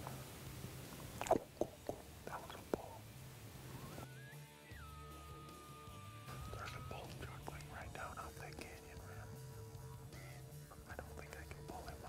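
Bull elk bugling: a single high whistle begins about four seconds in, rises, then drops slightly and is held for about three seconds before stopping.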